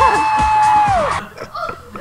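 A voice holding one long, high 'aaah' note over music, ending a little after a second in, played back from a video clip.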